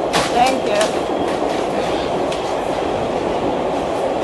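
New York subway train running, a steady rumble and rattle heard from inside the car, with a few brief sharp sounds in the first second.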